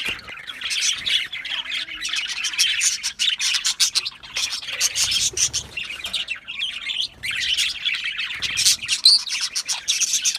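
A flock of budgerigars chattering: a dense, unbroken mass of many overlapping short chirps and calls.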